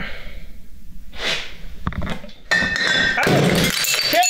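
A short breathy suck on a siphon tube, then about two and a half seconds in a carbonated glass bottle of mead bursts under pressure: a sudden crash of shattering glass, with shards clinking and ringing as the foaming liquid sprays out.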